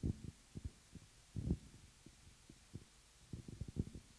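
Faint, irregular low dull thumps: a few at the start, a stronger one about a second and a half in, and a quick run of them near the end.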